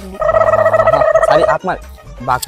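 A steady high tone with a few overtones, held level for about a second and a half and then cut off suddenly, followed by a brief voice.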